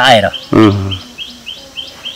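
A small bird chirping over and over, short rising notes at about four a second.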